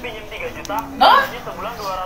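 Speech: a person's voice talking, with a brief louder vocal sound about a second in.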